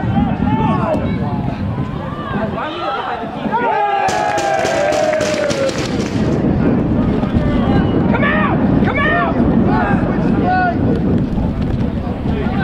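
Footballers shouting and calling to each other across the pitch during play, over a steady low rumble. About four seconds in there is a rapid run of sharp taps lasting about two seconds.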